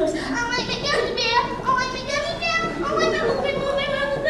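A child's high voice vocalizing in held, sliding notes without clear words.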